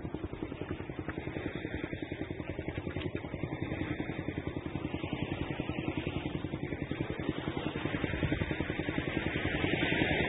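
An engine running steadily with a fast, even pulse, growing gradually louder.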